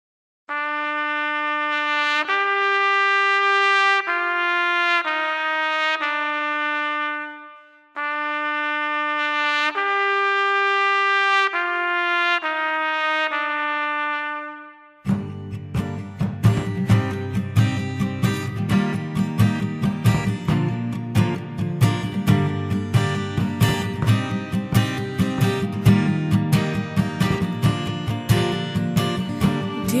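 Solo trumpet plays a slow phrase, a held note that leaps up and then steps back down, twice over. About halfway through, the rest of the band comes in with a fast, dense rhythm of drumming under the melody.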